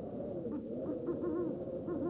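Owl hooting, a few short wavering hoots starting about half a second in, over a low steady background drone.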